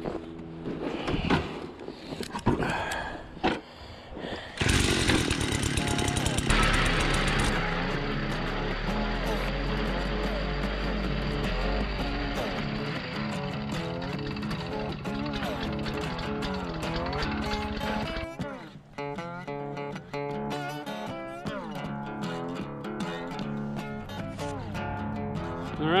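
A gas-powered ice auger runs, starting suddenly about five seconds in, with a heavier low rumble in the middle while it bores a hole through the ice, and stops about two-thirds of the way through. Background guitar music plays throughout and is the only sound near the end.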